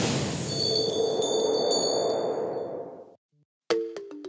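Transition sound effect for an animated title graphic: a rushing swell of noise with several high, bell-like chime tones ringing over it, fading out about three seconds in. Music starts just before the end.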